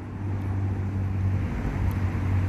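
A steady low hum under a haze of outdoor background noise.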